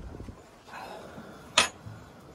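Paper towel rustling as hands grip and twist at a stuck cap, with one sharp click about one and a half seconds in.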